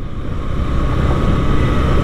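Steady rush of wind on the microphone and road noise from a Honda Shine motorcycle on the move.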